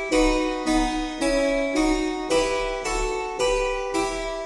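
Harpsichord playing repeated chords, about two a second, as basso continuo accompaniment.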